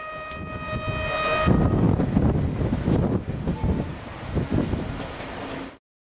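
A train horn sounds one steady blast that ends about a second and a half in. Then the moving train runs with a low rumble and rattling, which cuts off suddenly just before the end.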